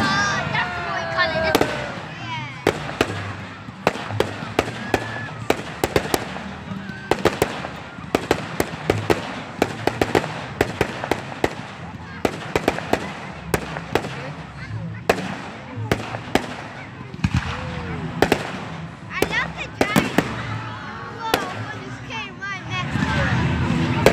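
Fireworks going off in quick succession: a dense string of sharp cracks and pops, several a second, with people's voices in the background, clearest near the start and near the end.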